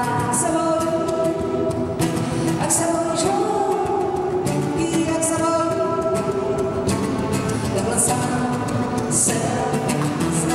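Live song: a woman singing long held notes over a strummed acoustic guitar.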